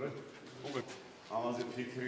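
Men talking in conversation, in short phrases with a pause between them.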